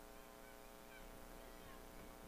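Near silence: a faint steady electrical hum with many evenly spaced overtones, and a few faint, brief chirping glides.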